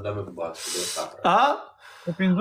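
A man's voice making short vocal sounds. About half a second in comes a sharp, hissing breath lasting about half a second, followed by a brief voiced sound that rises and falls.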